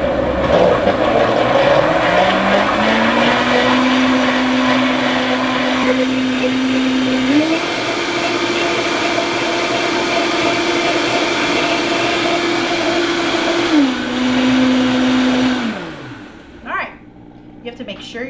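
Vitamix blender running on milk and chia seeds to blend the seeds in. The motor whine climbs over the first few seconds, steps up to a higher speed about seven seconds in and drops back about fourteen seconds in. It then winds down and stops about sixteen seconds in.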